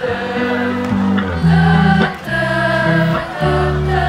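Live band music played loud through a festival PA: sustained chords that change about once a second over an electric bass line, with a choir-like, singing quality.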